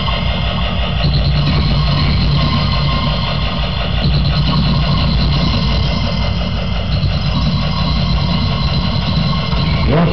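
A live band's amplified sound, heard as a loud, steady, droning wall of sound with heavy bass and no clear beat.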